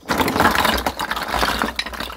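A basinful of veined rapa whelks tipped out of a plastic basin onto concrete, their heavy shells clattering and knocking against each other and the ground in a dense rattle that thins out near the end.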